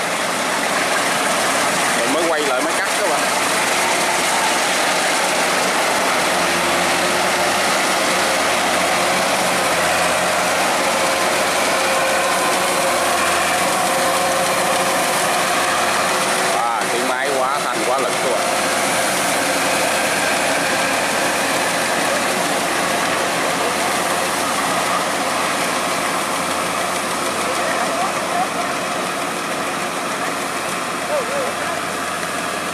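Kubota DC108X rice combine harvester with its Kubota 3800 diesel engine running under load while cutting and threshing ripe rice, a steady, dense mechanical noise with no let-up.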